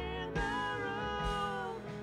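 A man singing a worship song to acoustic guitar, holding one long note from about half a second in until just before the end.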